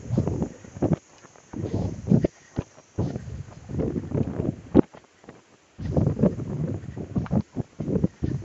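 Wind buffeting the microphone in irregular gusts, with a sharp knock nearly five seconds in.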